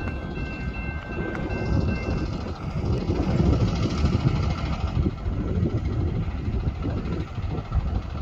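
Diesel locomotives of an approaching CSX freight train, a GE AC4400CW leading, rumbling and growing louder about three seconds in.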